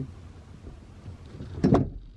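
Rear bench seat of a Jeep Wrangler TJ being flipped up and forward: low rumbling handling noise, then a short, loud clunk near the end.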